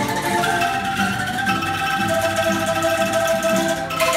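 A children's ensemble of bamboo angklung playing a melody, each instrument shaken to sound its own held note, with several pitches sounding together and the notes changing every second or so.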